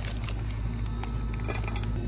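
Light clicks and crinkles of a steel HDU2 hold-down anchor in its plastic bag being handled, over a steady low hum.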